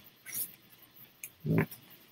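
A single short hummed "mm" of acknowledgement from a listener, about one and a half seconds in. Before it come a soft rustle and a faint click over otherwise quiet room tone.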